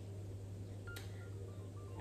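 Quiet room tone with a steady low hum, a single sharp click about a second in, and a few faint short tones at slightly different pitches.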